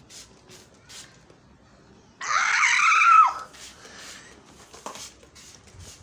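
Faint spritzes of a hand trigger spray bottle misting a houseplant. About two seconds in, one loud high squeal lasting about a second: its pitch rises, then drops off sharply at the end.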